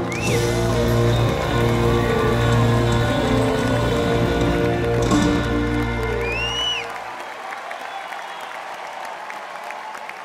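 A live rock band of guitars, bass, drums and keyboard holds its closing chord and stops about seven seconds in. The crowd's applause and cheering carry on after it, with a few shrill whistles from the audience.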